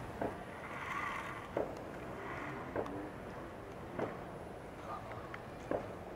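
About five soft clicks, spaced roughly a second apart, from buttons being pressed on a telescope mount's handset while trying to align it on the moon. Two brief faint whirs come in the first half, over a steady faint outdoor hiss.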